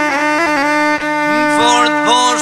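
Lahuta, the Albanian bowed folk lute, played with a bow: a melody with a steady drone under it, turning to quick, wavering ornaments in the second half.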